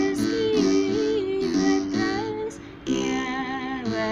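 A woman singing in Amharic with vibrato, accompanied by a ten-string begena, an Ethiopian lyre, whose low strings are plucked. The singing breaks off briefly a little past the middle and then resumes.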